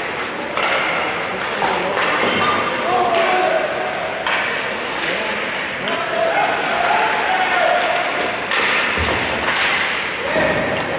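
Ice hockey rink during play: indistinct shouting from players and spectators, broken by several sharp knocks of puck and sticks against the boards and ice.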